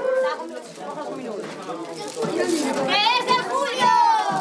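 Overlapping voices of children and adults in a crowded room, with high-pitched children's voices calling out in the second half.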